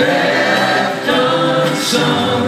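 Live rock band playing, with electric guitars and bass under voices singing together, heard from the audience at a concert.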